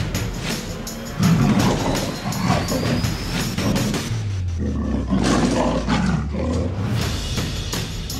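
Two growling big-cat roars, the first about a second in and the second about four seconds in, over background music.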